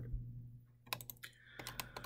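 A few faint clicks of computer keys: a couple about a second in, then a quick run of them near the end.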